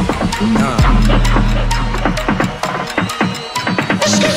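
Big-room electro house dance music: a busy pattern of electronic drum hits with falling synth swoops, and a deep sustained bass note that drops in about a second in and fades away shortly after the middle.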